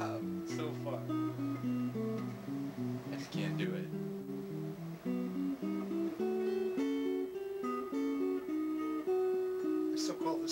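Telecaster-style electric guitar played clean in a Baroque-style improvisation: several voices move at once, a melody line above a moving bass, in a steady stream of picked notes.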